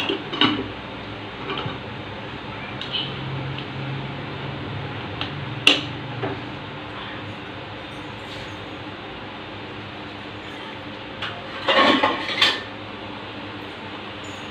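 Metal utensil clinking and tapping against an aluminium pressure cooker and its lid: a few scattered clinks, one sharp one about halfway, and a short cluster of knocks near the end.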